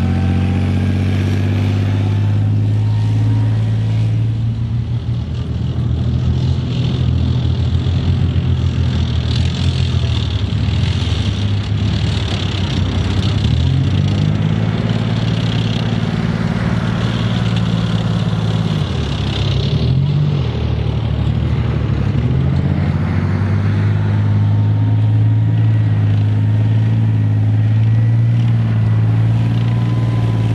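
Tracked armoured vehicles, a Leopard 2 tank and a Marder infantry fighting vehicle, driving across sandy ground: heavy diesel engines running hard with track noise. The engine pitch drops and picks up again about fourteen seconds in and again around twenty seconds in.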